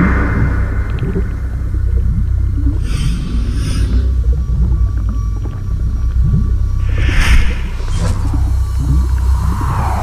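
Dark cinematic title score: a deep, steady low drone with short groaning low sweeps, and whooshing swells about three seconds in and again around seven seconds.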